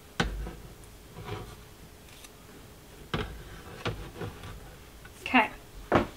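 A few sharp knocks and clicks of kitchen utensils against a cutting board and a slow cooker, spaced a second or more apart, with a short burst of voice near the end.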